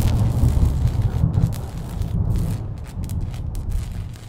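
A deep, heavy rumble with crackling over it that fades gradually and cuts off near the end.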